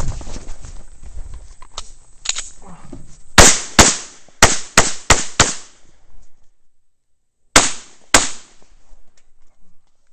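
Semi-automatic pistol fired in a fast string of six shots over about two seconds. After a short pause come two more shots, preceded by rustling and handling clicks.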